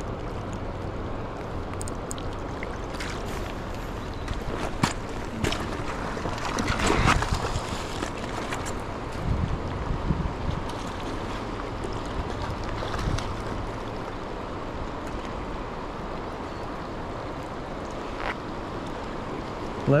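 Steady rush of river water with wind rumbling on the microphone, broken by a few brief knocks.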